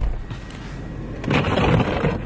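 A short low thump, then about a second and a half in a long, breathy exhale blown out through pursed lips.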